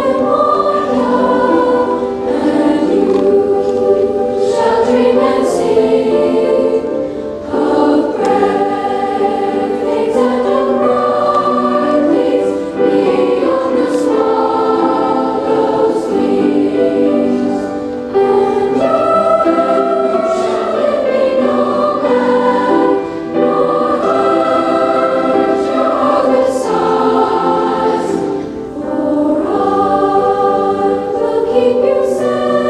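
Youth choir of intermediate and junior high school students singing in parts. The voices hold long phrases, with short breaks every few seconds.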